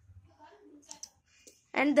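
A few faint, soft clicks of scissors snipping wool yarn, with a spoken word near the end.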